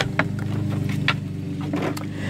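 Steady low mechanical hum of running machinery, with a few light clicks.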